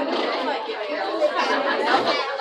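Background chatter: several people talking at once in a large, busy room, with no single voice standing out.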